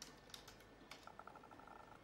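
Faint typing on a computer keyboard: a few sharp key clicks in the first second, then a quick, even run of lighter ticks.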